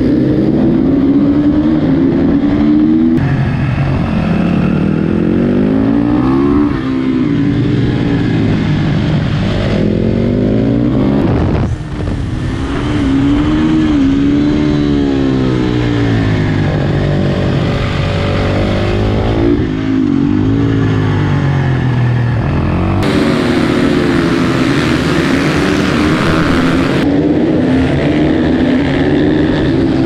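KTM supermoto's single-cylinder engine ridden hard, revving up and dropping back again and again as it shifts through the gears, heard from a camera mounted on the bike.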